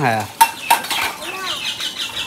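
Metal dishes or utensils clattering as they are handled and washed, with two sharp clinks about half a second apart and a brief high metallic ring after them.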